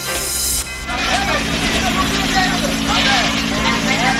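A short whoosh of a news transition sting lasting about half a second. It gives way, about a second in, to field sound from a fire scene: a steady engine drone under a crowd of many overlapping voices.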